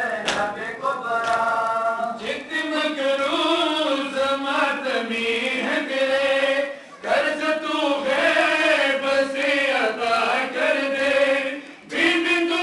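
A crowd of men chanting a Shia mourning lament (noha) together in long sung phrases, with rhythmic chest-beating slaps of matam under the voices. The chant breaks off briefly about seven seconds in and again near the end, between phrases.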